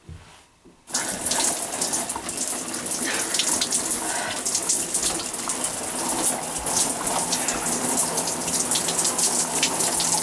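A shower is turned on about a second in after a short knock, then runs steadily with its spray spattering.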